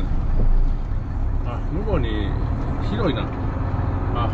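Steady low engine and road rumble inside a truck cab as the truck rolls slowly, with a couple of short vocal sounds from the driver.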